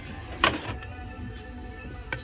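Plastic storage basket with a bamboo lid scraping once as it is pulled off a metal store shelf, a short loud scrape about half a second in, over background music.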